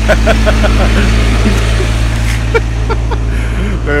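Small utility vehicle's engine running as it pulls away past the camera, its hum fading out about a second and a half in, over a steady low rumble.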